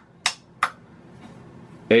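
Address toggle switches on an Altair 8800 replica's front panel being flipped up by hand: two sharp clicks less than half a second apart.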